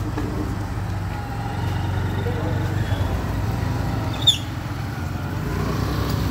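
Steady low rumble of a motor vehicle engine running nearby, with one sharp click about four seconds in.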